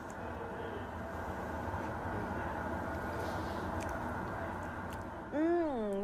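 Steady low rumbling hiss of background noise, even throughout, with a short 'mmh' of tasting near the end.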